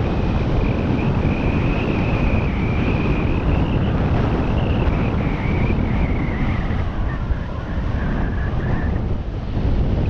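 Wind buffeting a camera microphone while skiing fast down a groomed slope: a steady low rumble, with the skis hissing over the snow. A faint wavering high whistle runs through it and drops in pitch about six seconds in.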